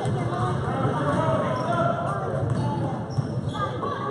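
A basketball being dribbled on a gym floor, under continuous spectators' chatter.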